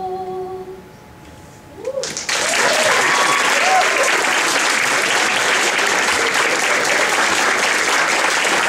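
A vocal group's final held chord fades out within the first second. After a short pause, an audience breaks into steady applause, with a few whoops near the start of the clapping.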